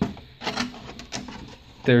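Clear plastic packaging insert of a trading card box being handled: a sharp click at the start, then a few light crackles and taps of the plastic.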